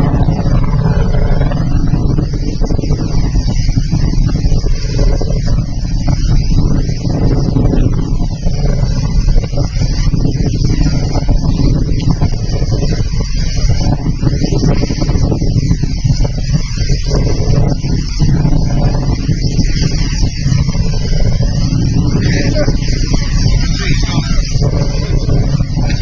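Wind buffeting the microphone: a loud, steady low rumble of noise that does not let up.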